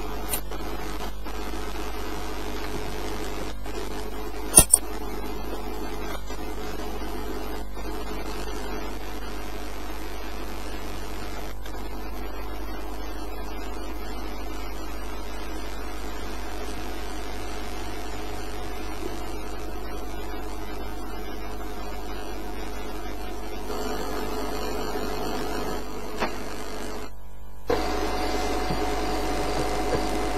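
A steady low hum, with two brief clicks about four and a half seconds in. It cuts out for a moment near the end and comes back with a slightly different tone.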